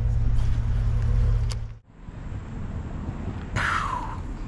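Loud, steady low rumble of wind and clothing rubbing on a chest-mounted action camera's microphone. It cuts off abruptly about two seconds in, leaving a quieter outdoor background with a short falling tone near the end.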